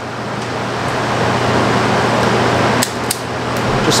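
Steady rushing noise with a low hum, like a fan running. A few sharp clicks near the end as hand wire strippers bite and pull the insulation off the end of a copper conductor.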